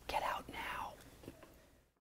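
A man's soft, breathy vocal sounds without voice: two short puffs of breath in the first second, then a fainter one.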